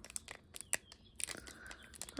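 Foil wrapper of a Prizm trading-card pack crinkling faintly in the hands, with a few scattered clicks and crackles.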